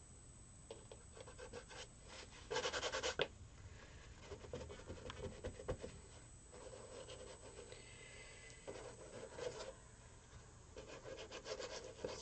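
A tool scraping across a painted canvas: a loud run of quick scraping strokes about two and a half seconds in, then fainter, intermittent scraping and rubbing on the surface.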